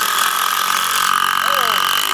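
Two Dewalt cordless impact drivers, a 20 V DCF787 and a 12 V DCF801, running together and hammering long screws into a wooden board: a loud, steady rattling drone with a high whine.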